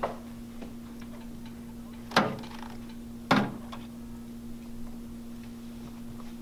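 Two sharp knocks about a second apart as the instrument basket is set down into the ultrasonic cleaner's tank, over a steady low hum.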